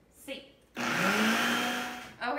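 Electric food processor switched on about three-quarters of a second in. Its motor whine rises in pitch as it spins up, then it runs very loud, chopping a bulky load of riced cauliflower with fresh herbs and garlic.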